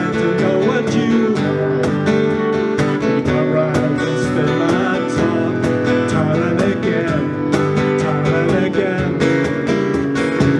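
Live acoustic folk-rock band playing an instrumental passage: two acoustic guitars strummed in a steady rhythm, with a mandolin-family instrument playing along and no singing.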